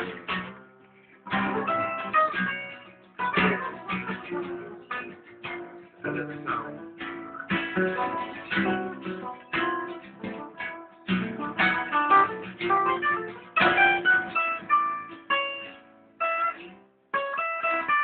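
Acoustic guitar being played: plucked and strummed chords and short note phrases, struck about once a second and left to ring, with brief pauses near the start and just before the end.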